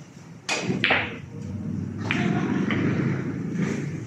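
Pool balls on a billiard table: a sharp knock and thud about half a second in, followed by a steady low rolling rumble of a ball for about two seconds.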